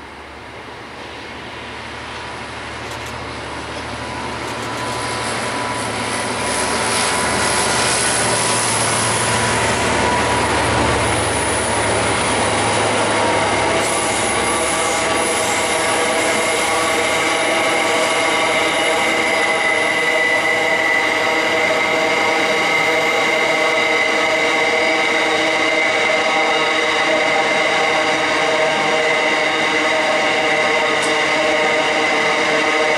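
Diesel-hauled coal train passing: the locomotives' engines grow louder as they draw near, then a long rake of coal hopper wagons rolls by steadily. Over the wagons' rolling, their wheels squeal on the curve in several steady high tones.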